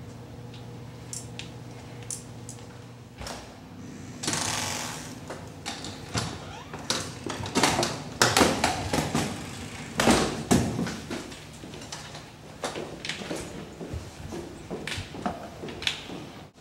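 Kick scooter being ridden and handled, with irregular clattering knocks and rattles, thickest in the middle of the stretch, and a brief rushing noise about four seconds in.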